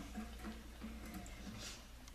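Faint, low murmuring from a person's voice with a brief rustle near the end, over a steady low hum.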